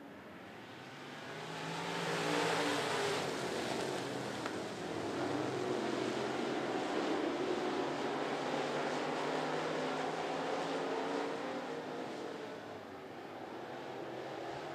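A pack of dirt-track race cars accelerating single file on a restart, several engines at once swelling loud about two seconds in, then running hard with their pitches rising and falling as the cars race past.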